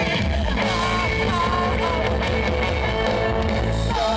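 Live band playing amplified music with electric guitars and singing; the bass comes in heavily at the start.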